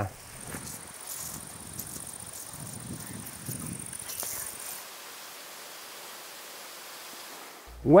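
Faint outdoor ambience: a steady low hiss with a thin, high-pitched buzz over it that stops about five seconds in.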